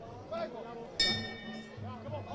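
A boxing-ring bell struck once about a second in, ringing briefly and fading away: the bell that starts the first round. Voices from the arena crowd can be heard around it.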